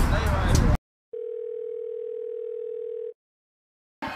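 A steady electronic beep: one flat, mid-pitched tone held for about two seconds, starting and stopping abruptly.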